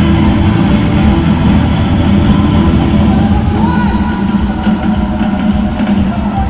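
Live rock band playing through a stadium PA, with drums, guitar and heavy bass, recorded from far back in the stands.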